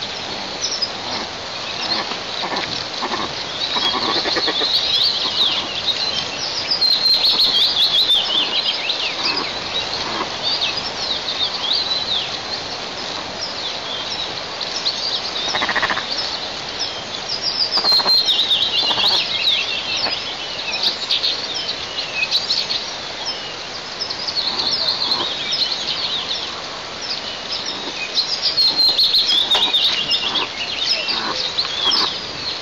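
Birds calling: phrases of quick, high descending notes that repeat every few seconds over a steady outdoor background hiss.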